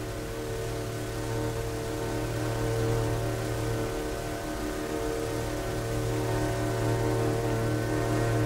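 Orchestral film score holding one sustained chord over a low drone, the tones steady and unchanging and swelling slightly in loudness.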